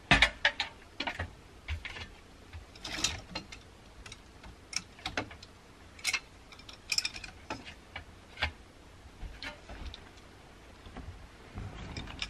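A metal step stool set down with a knock, then irregular light clicks and clacks of clothes hangers handled on a closet rod overhead.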